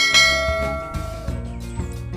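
A bright bell-like chime, the notification-bell sound effect of a subscribe-button animation, rings once at the start and fades away over about a second, over background music with a steady beat.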